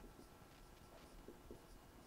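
Very faint scratching of a marker writing on a whiteboard: a few short strokes against near-silent room tone.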